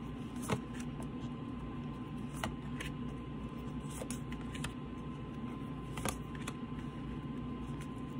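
A deck of tarot cards being shuffled by hand, with a few soft card clicks every second or two over a steady low hum.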